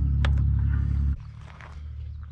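Vehicle engine idling: a steady low rumble, with a single click early on, that stops abruptly just after a second in and leaves a much quieter outdoor background.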